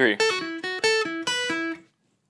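Steel-string acoustic guitar playing a quick single-note lead lick: about ten picked notes stepping between a few pitches, stopping just before the end. It is a fiddle-style lick moving around the ninth fret of the G string.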